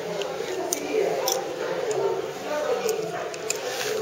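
Soft background voices and room sound with a few small clicks, as a steel dental elevator levers a root tip out of the jaw.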